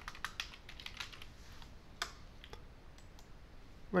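Typing on a computer keyboard: a quick run of keystrokes in the first second or so, then a single louder click about two seconds in, followed by a couple of faint ticks.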